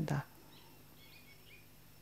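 Faint bird chirps, a few short high calls between about half a second and a second and a half in, over quiet room tone.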